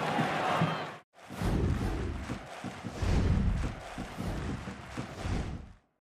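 Football stadium crowd noise, cut off sharply about a second in. Then a short music sting with deep, thumping bass beats that stops just before the end.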